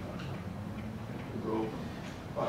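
Room tone in a lecture room, mostly a steady low hum, with a brief faint voice about one and a half seconds in.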